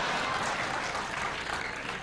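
Audience applauding, easing off slightly near the end.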